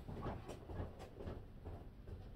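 Faint knocks and shuffling of someone moving about off-camera, a few knocks about half a second apart, over a low steady hum.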